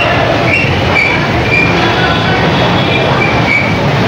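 Escalator running, a steady low mechanical rumble without a break.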